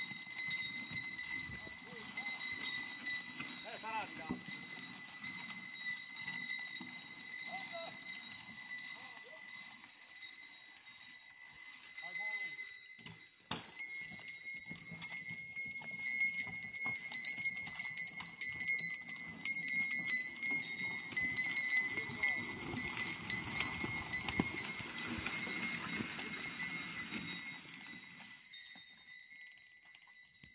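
A pair of oxen hauling logs through the forest: hooves and dragging timber make a low, uneven rumble that grows louder in the second half. A steady high ringing tone runs over it and steps slightly higher about halfway through.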